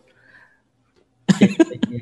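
A short pause, then past the middle a man coughs several times in quick succession, short sharp coughs.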